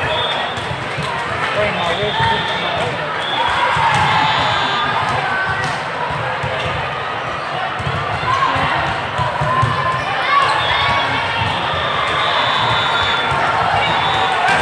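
Volleyball game sounds in a busy hall: balls being struck and bouncing on the court amid the steady chatter and calls of players and spectators, with short high tones now and then.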